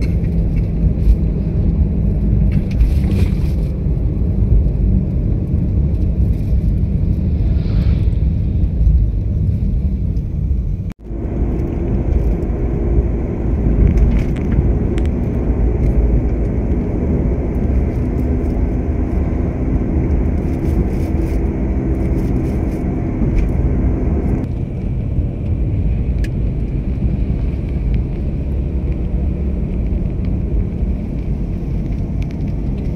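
Moving car heard from inside the cabin: a steady low rumble of engine and tyre noise on the road. The sound cuts out for an instant about eleven seconds in, then carries on.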